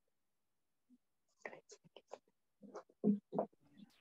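Near silence at first. About a second and a half in, a person starts speaking quietly in short, broken fragments, like murmuring or whispering over an online call, and it gets louder near the end.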